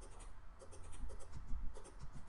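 Light clicks of a computer mouse, a dozen or so in quick irregular succession, over a low steady hum.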